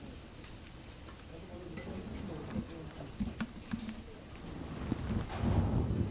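Vervet monkeys climbing on branches close by, with scattered light knocks and a louder rustle near the end, and faint voices in the background.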